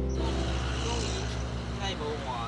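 Outdoor background noise with a steady low rumble of road traffic and faint, indistinct voices. Background music cuts off at the very start.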